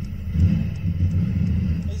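Mazda 323's engine and road noise heard inside the car's cabin as a steady low rumble.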